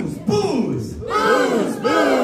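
An audience and band shouting a word together in unison, "booze!", twice: a short shout, then a longer and louder one about a second in.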